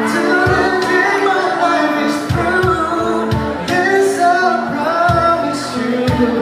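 Live band performing a song: singing over acoustic guitar, with low drum beats.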